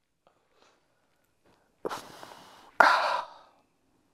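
A man sighing: a soft breath in about two seconds in, then a louder breath out.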